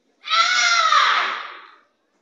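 A child's karate kiai: one long, loud, high-pitched shout that falls in pitch as it fades away near the end.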